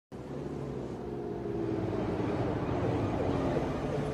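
An engine running steadily at idle, low and even, with only slight drifts in pitch.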